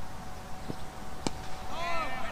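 A cricket ball struck by the bat with one sharp crack a little past a second in. Near the end, high, wavering calls begin from the field.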